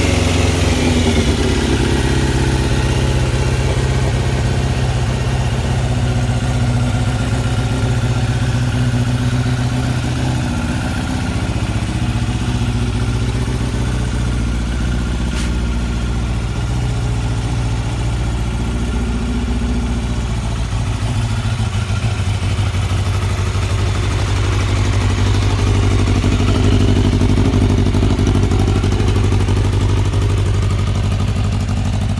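1991 Yamaha FZR600 Genesis's inline-four engine idling steadily, its revs falling back to idle in the first second.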